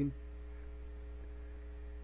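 A steady low electrical hum, mains hum in the recording, with a few faint steady higher tones above it.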